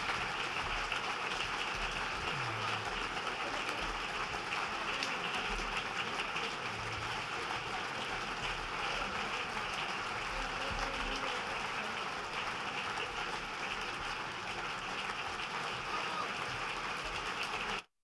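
Large audience applauding, a dense, even clapping that holds steady and cuts off abruptly near the end.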